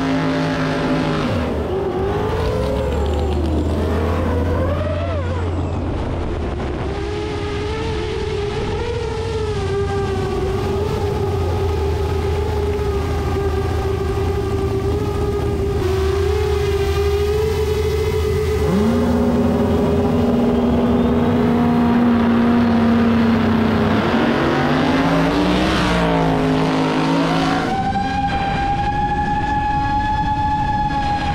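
Motor and engine sound at a drag strip: a pitched whine holds one note for several seconds at a time, wavers and glides up and down about 2 to 4 seconds in and again about 25 seconds in, then settles on a higher steady note near the end.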